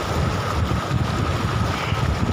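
Mountain stream rushing over rocks, with wind buffeting the microphone in uneven gusts.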